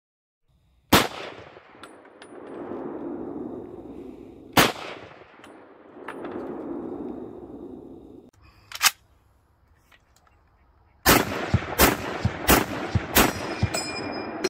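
M1 Garand rifle in .30-06 firing: two single shots, each followed by a long rolling echo, another shot about nine seconds in, then a quick string of shots about two-thirds of a second apart near the end. The string ends in a brief metallic ring, the typical ping of the empty en-bloc clip being ejected.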